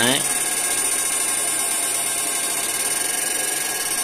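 Tosiba fish-shocking inverter with added cooling fans running under a test load in cable-pull mode, making a steady rushing noise with a thin high whine. It runs evenly without faltering, which shows the high-frequency upgrade is stable under load.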